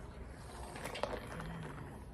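A person drinking from a plastic Gatorade squeeze bottle: faint swallowing and a few small clicks about a second in, then a short low hum midway.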